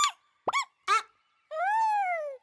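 Squeaky, high-pitched nonsense vocalizations of cartoon bird characters: a quick rising squeak at the start, two short chirps, then a long call that rises and falls near the end.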